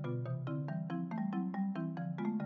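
Marimba quartet playing softly: an even pulse of mallet strokes, about four or five a second, each note ringing briefly over low bass notes.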